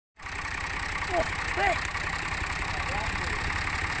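New Holland Al-Ghazi tractor's diesel engine running steadily at low revs, a deep even chugging rumble.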